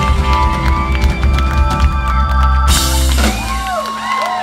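Live rock band with electric guitars, bass, drums and keyboard playing the closing bars of a song. It ends on a final crash a little before three seconds in, and the band sound drops away. Audience whoops and cheers rise near the end.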